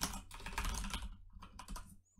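Computer keyboard being typed on: a quick run of keystrokes that thins out in the second half.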